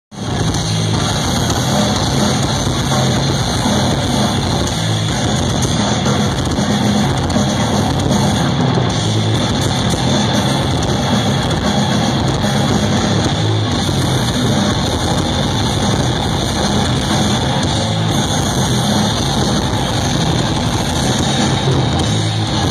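Death metal band playing live through a festival PA: heavily distorted electric guitars over a drum kit, loud and dense, heard from the audience. The sound starts abruptly.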